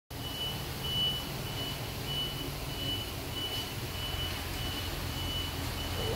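High-pitched electronic beeping, repeating about twice a second, over a steady low hum.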